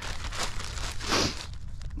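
Clear zip-top plastic bag crinkling as it is handled and opened, with a louder rustle about a second in.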